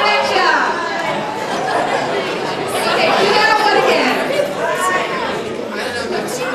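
Crowd chatter: many people talking at once around tables in a large hall, with no single voice standing out.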